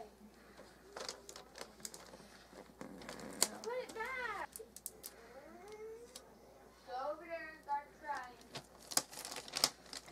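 Clear sticky tape being pulled, torn off and pressed onto wrapping paper: a scatter of sharp clicks and crackles, with paper rustling. A voice is heard briefly a few times in the middle.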